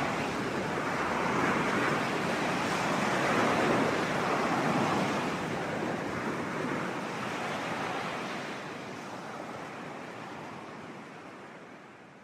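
Sea waves washing in slow swells, fading gradually away over the last few seconds.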